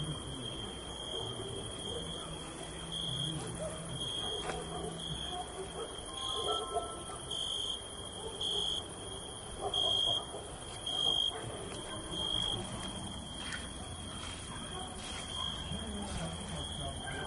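A steady high-pitched tone that swells and fades irregularly, over a faint low murmur.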